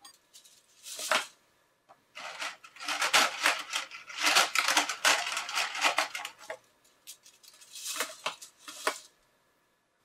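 Thin 3D-printed PLA ear savers clattering as they are handled and dropped into a clear plastic tub: dense runs of small plastic clicks, in two main bursts with a short pause between.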